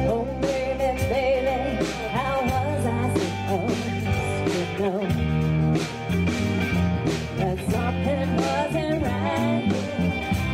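A live rock band playing a song: a woman sings lead over electric guitars, bass guitar and a drum kit.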